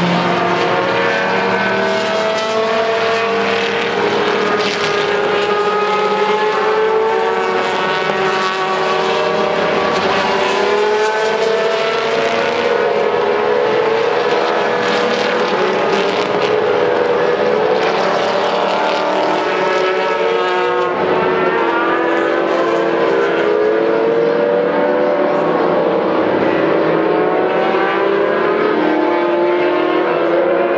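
Engines of a pack of FIA GT1 racing cars running through a corner. Many overlapping engine notes rise and fall continuously as the cars brake and accelerate.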